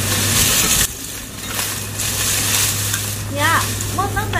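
Hoes scraping and chopping through dry crop stalks and stubble, a crackling rustle in repeated strokes. Near the end a voice-like call cuts in.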